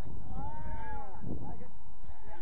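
A distant, drawn-out shout from a player on the pitch, one long call that rises and falls in pitch, over a steady low rumble.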